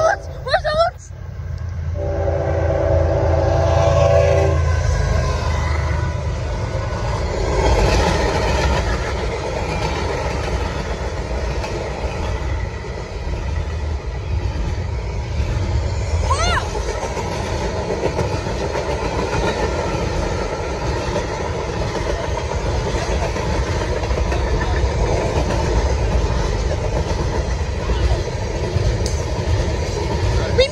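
CSX freight train at a grade crossing. The lead GE ES44AH locomotive sounds a short horn chord a couple of seconds in, over the rumble of its diesel engines. A long manifest of gondolas and tank cars then rolls past with steady wheel-on-rail noise.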